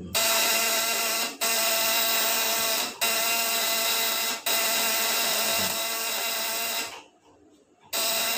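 Platina (vibrating contact-breaker points) of a homemade 24/36 V high-voltage inverter buzzing loudly as it chops current into the transformer under a lamp load. It breaks off briefly three times and stops about a second before the end.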